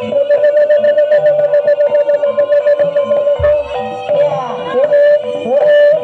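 Traditional Javanese jaranan dance music: a sustained, wavering lead melody over a steady pulse of short struck notes. A deep drum or gong stroke comes about three and a half seconds in, and the melody bends up and down near the end.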